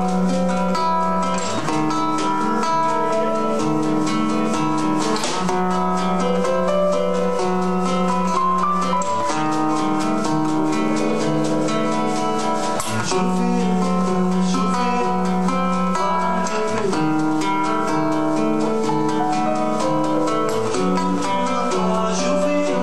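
Live band playing an instrumental introduction led by acoustic guitars strummed and picked in a steady rhythm, with percussion and other instruments filling in.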